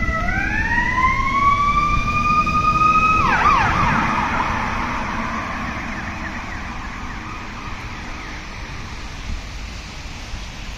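Emergency vehicle siren in a wail, its pitch climbing slowly for about three seconds, then dropping sharply and breaking into fast warbling. A steady rush of vehicle noise follows and slowly fades.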